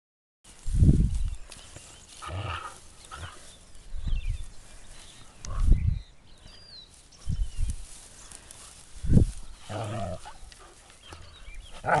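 A Scottish Deerhound puppy and a whippet play-fighting, with short growls and grunts between several loud low thumps.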